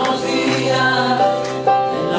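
A man singing with a strummed acoustic guitar, holding long notes.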